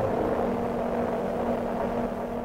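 Industrial noise music: a dense, steady wall of noise with a low held drone tone underneath.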